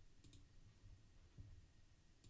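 Near silence with a couple of faint computer mouse clicks about a quarter second in, and a soft knock later.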